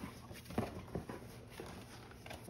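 Cardboard shipping box being handled and opened by hand: a few soft knocks and rustles of the cardboard, the sharpest about half a second in.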